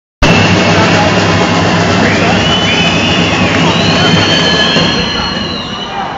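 Loud, dense crowd noise in a packed volleyball hall between rallies, cutting in after a brief dropout right at the start. A steady low drone runs under it, and high sliding tones sound through the middle.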